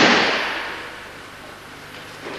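A loud breakfall slap as a thrown aikido partner hits the mat at the start, echoing through a large hall and fading away over about a second.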